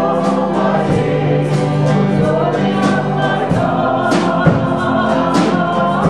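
A small vocal group singing a contemporary Christian worship song, with electronic keyboard accompaniment and regular percussion strokes.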